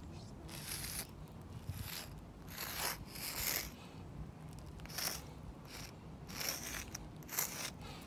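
Sidewalk chalk scraping on concrete in about seven short strokes with brief pauses between them, drawing a hopscotch number.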